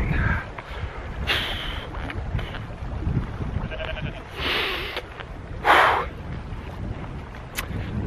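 Sheep bleating a few times, heard over wind rumbling on the microphone.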